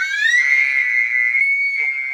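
A young woman's long, high-pitched scream, rising in pitch at first and then held steady.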